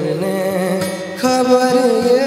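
A young man singing long, wavering held notes into a microphone, accompanied by an acoustic guitar.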